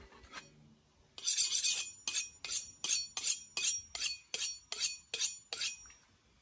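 Steel kitchen knife being sharpened on a honing rod: after a quiet first second, a longer first stroke and then a quick series of about a dozen short metallic scrapes with a light ring, about three a second, stopping just before the end.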